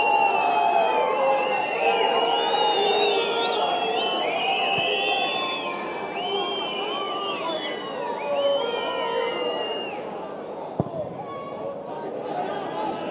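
Stadium football crowd whistling and shouting, many shrill whistles rising and falling over one another, dying down after about ten seconds. A single thud near the end is the goal kick struck.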